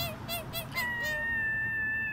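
A high, wordless, voice-like melody: three short wavering notes, then one long high note held from about a second in that slowly sinks in pitch.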